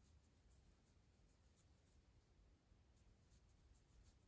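Near silence, with the faint scratchy rubbing and soft ticks of a crochet hook pulling yarn through stitches.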